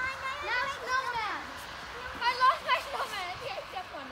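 A young child's high-pitched voice chattering and calling out in play, with its pitch sliding up and down in short phrases.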